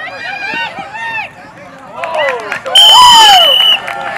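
Spectators shouting and cheering during a youth flag football play, then a referee's whistle blown once for about a second near the end, the loudest sound, signalling the play dead.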